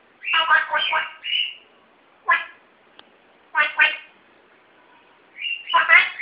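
African grey parrot mimicking Chinese speech in short phrases of clipped syllables, with a brief whistled glide after the first phrase. Single syllables follow about two and four seconds in, and a longer phrase comes near the end.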